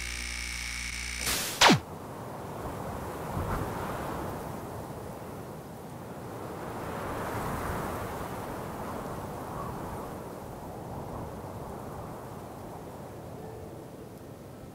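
Intro sound effects: a steady electric hum, then a sharp hit about a second and a half in with a pitch falling fast from high to low. After it comes a low rushing noise that swells in the middle and slowly fades.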